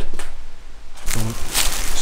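A man's voice saying "so" after a short quiet pause, with the start of the next "so" at the very end.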